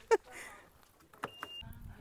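A couple of sharp clicks and one short, high electronic beep from the SUV's rear liftgate being worked, followed by a low rumble.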